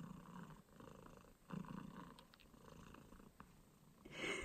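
Tabby cat purring faintly, the purr swelling and easing in waves about a second long with its breathing.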